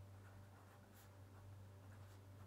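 Faint scratching of a pencil on paper as words are written by hand, over a steady low hum.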